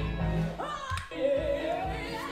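Female lead vocal sung over a live rock band with electric guitar, the melody gliding between held notes, with a sharp hit about a second in.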